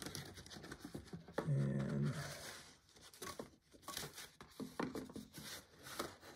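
Quiet handling noises of a stiff black board presentation box and a cloth-covered CD folder: soft scrapes, rustles and light taps. A short murmur from a man's voice comes about one and a half seconds in, followed by a brief rustle.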